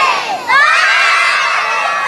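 A crowd of young children shouting and cheering together, with a brief dip and then a louder surge of cheering about half a second in.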